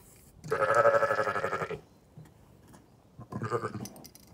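Zwartbles sheep bleating twice: a long, wavering bleat of over a second, then a shorter one near the end.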